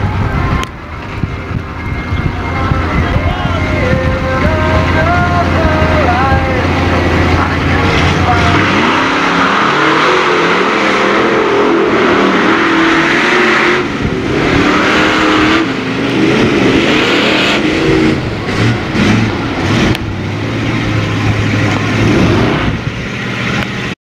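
Lifted mud-truck engines rumbling with throttle blips, then revving hard at full throttle from about eight seconds in as a truck drives through a flooded mud pit, with a heavy rush of spraying water and mud over the engine note.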